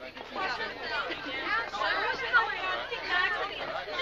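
Overlapping chatter of several young women's voices, with no clear words.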